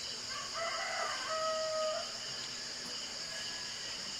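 A faint rooster crow, rising through a few short notes into one long held note, lasting from just after the start to about two seconds in. Under it, a steady high chirring of insects.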